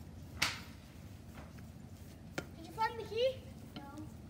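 A loud sharp crack about half a second in, then a child's short wordless cries with a rising and falling pitch near the end.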